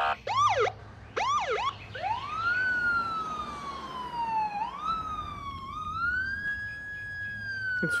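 Police car siren: two short whooping chirps, then a slow wail that rises and falls a few times.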